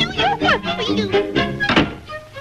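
Cartoon soundtrack music with sliding, falling notes, and one sudden hit near the end.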